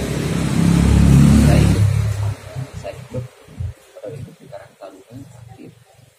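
A motor vehicle engine running close by and revving, loudest about a second in and dropping away suddenly just after two seconds in.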